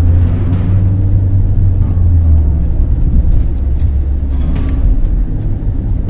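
Car cabin noise while driving: a loud, steady low rumble of engine and road heard from inside the moving car.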